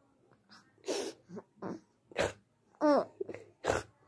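Young baby laughing in short breathy bursts about a second apart, with one voiced squeal falling in pitch about three seconds in.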